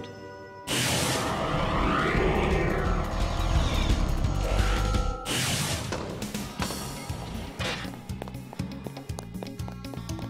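Cartoon energy-blast sound effect: a loud, noisy surge with a deep rumble that starts about a second in and cuts off suddenly about five seconds in, over music. Music with a steady beat follows.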